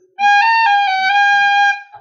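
Tin whistle playing a roll on the note G, slowly: one held note about a second and a half long, broken near its start by a brief higher flick (the cut) before settling back on the note.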